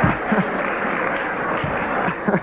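Large banquet audience laughing and applauding, a dense steady wash of clapping with individual laughs through it.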